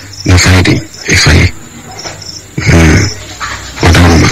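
A person's loud voice in short outbursts, three in quick succession with a fourth starting near the end.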